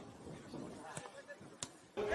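Two short thuds of a football being kicked on a pitch, about a second in and again just past halfway, over the low open-air sound of the field.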